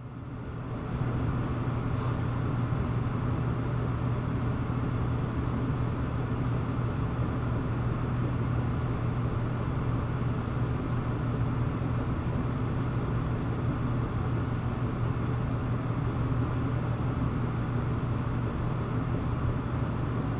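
A steady low droning hum with a rushing noise over it, machine-like, fading in over the first second and then holding even.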